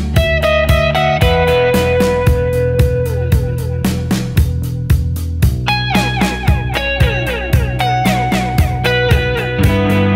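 Electric guitar, a Fender Jazzmaster, playing atmospheric post-punk lead lines with delay echoes trailing each note. It plays over a backing track whose drums keep a steady beat of about four strokes a second, with bass underneath.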